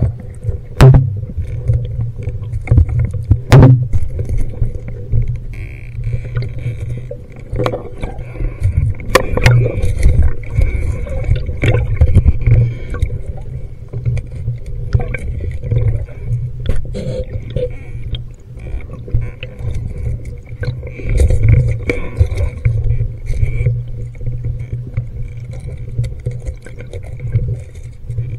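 Muffled underwater noise through a handheld camera's housing: a steady low rumble with frequent knocks and scrapes as the housing bumps against the diver's scuba gear. A hiss comes and goes, about a quarter of the way in and again past two-thirds.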